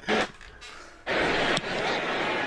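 Football TV broadcast audio played back from a phone into the microphone. A muffled, steady crowd-noise hiss starts suddenly about a second in, after a short burst of sound at the very start.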